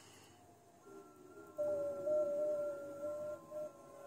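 FT8 digital-mode signals on the 20-metre band, heard through a ham radio receiver's speaker: several steady tones together, one stronger and lower and one fainter and higher. They start about a second and a half in, as a new FT8 transmit cycle begins.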